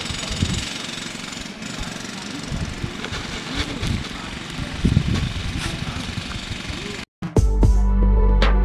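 Outdoor background noise with indistinct distant voices and a few handling knocks. About seven seconds in it cuts out, and electronic jingle music begins.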